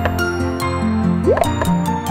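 Cartoon background music with a steady bouncing bass line, and a short rising "bloop" sound effect about two-thirds of the way through.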